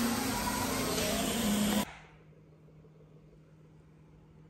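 A loud, steady rushing hiss over a low hum cuts off abruptly about two seconds in. Quiet room tone with a faint steady hum follows.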